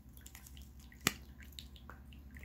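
Tabletop rock-cascade water fountain trickling with faint drips, and a single sharp click about a second in.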